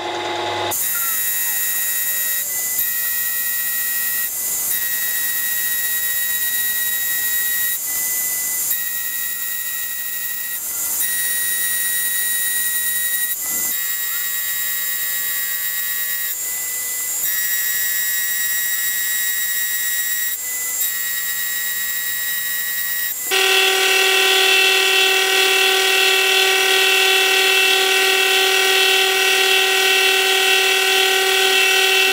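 Milling machine taking a light pass with a dovetail cutter through a metal block: a steady, high-pitched whine from the spindle and cut, broken by short breaks every few seconds. About three-quarters of the way through it turns louder, with a lower-pitched whine added.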